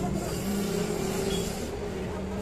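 A motor vehicle's engine running steadily, a low drone over general street noise.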